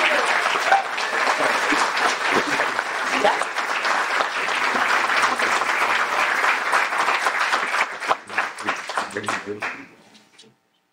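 Audience applauding, many hands clapping together; the clapping thins out near the end and dies away.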